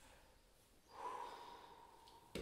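A person breathing out audibly, starting about a second in, soft and noisy with a faint steady whistling note in it, after a moment of near silence.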